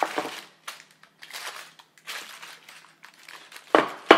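Greaseproof paper crinkling in short, irregular rustles as the paper lining a pan of brownie mix is shuffled around by hand, with a louder crinkle near the end.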